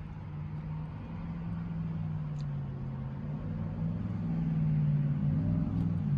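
2020 Chevrolet Corvette Stingray's 6.2-litre V8 idling, heard from inside the cabin as a steady low hum that slowly grows louder.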